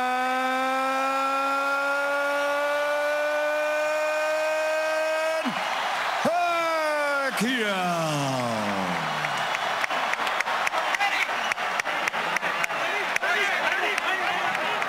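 A boxing ring announcer's long, drawn-out shout of the winner's name, holding the last vowel for about five seconds at a slowly rising pitch, then dropping in two falling sweeps. After that, an arena crowd cheers and applauds, with many sharp claps.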